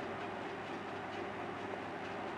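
Steady low background noise with a faint hum and no distinct events: the room tone of the recording.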